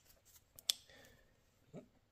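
Quiet handling of a motorcycle's fuel pump wiring connector, with one sharp click about two-thirds of a second in and a few faint ticks: the connector being unclipped from the fuel pump on top of the tank.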